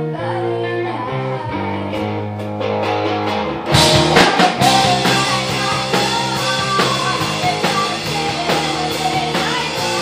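Live rock band playing: electric guitar and a female singer over held notes, then the full band with drums comes in loudly with a crash about four seconds in and keeps driving.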